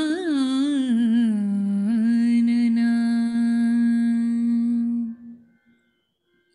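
A woman singing a Hindu devotional invocation to Ganesha solo, without accompaniment: a few ornamented turns of the melody, then one long held note that fades out about five and a half seconds in.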